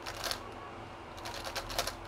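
GAN Skewb M Enhanced magnetic speed skewb being turned fast during a timed solve: quick runs of plastic clicks and clacks, one flurry just after the start and a denser one in the second half.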